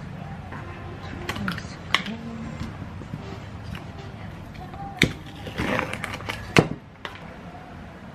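Plastic ice cream tub being opened by hand: a sharp click as the lid is prised up, a rustle as the inner seal is peeled back, and a louder click as it comes free. A few lighter knocks come earlier, as a small cup is handled and set down on the counter.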